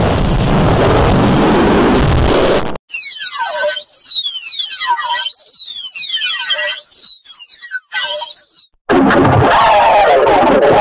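Heavily distorted, effects-processed logo-intro audio: a loud, dense noisy stretch that cuts off suddenly, then about five whistle-like sweeps falling steeply in pitch, a little over a second apart, before the loud distorted noise comes back near the end.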